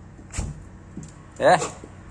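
A man's voice calling "ei" once, loudly, to a dog about one and a half seconds in, with a short thump about half a second in.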